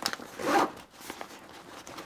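Zipper on the front pocket of a Peak Design 6-litre sling bag being worked by hand. There is a short zip about half a second in, among light clicks and the rustle of the bag's fabric.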